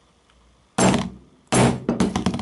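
A large steel chisel striking a Sony Ericsson Xperia Active smartphone on a work table, twice: a sharp hit just under a second in and another about half a second later, each ringing briefly. The rugged phone does not crack under the blows.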